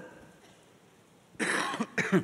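A man coughs once into his fist, a short harsh cough about a second and a half in, after a moment of quiet.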